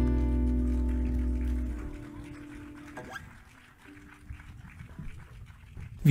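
Closing chord of an acoustic guitar song ringing and fading out over about two seconds, then much quieter, with a faint click about three seconds in.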